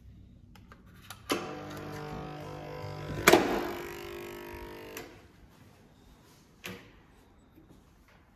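Hotel room door's electronic key-card lock buzzing steadily for about four seconds as it releases, with a loud click of the latch a couple of seconds in as the door is pushed open, and a sharper click when the buzzing stops. Another short click follows near the end.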